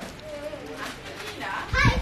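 Speech only: faint voices in the background, then a woman starts talking close to the microphone near the end.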